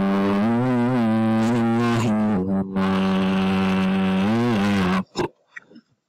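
A voice reciting the Quran in a melodic chant, holding long drawn-out notes with small turns of pitch. It breaks briefly about halfway through and stops about a second before the end.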